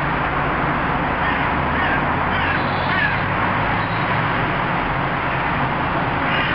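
A steady loud rushing noise, with a few short harsh bird-like calls about two to three seconds in.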